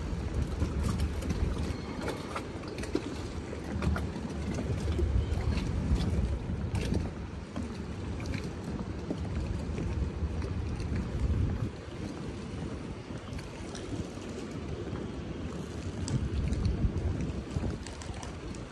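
Wind buffeting the microphone over a low, uneven rumble of boat engines, with a few faint clicks.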